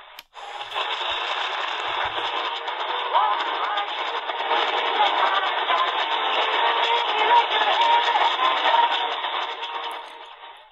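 C.Crane CC Skywave portable radio on the AM band, tuned to 1010 kHz after a brief mute as the frequency changes: a weak, distant station's music comes through under dense static and interference, sounding thin and cut off above the treble.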